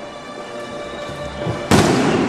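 Fireworks going off: a steady held tone sounds, then a sudden loud bang about 1.7 seconds in as a firework bursts.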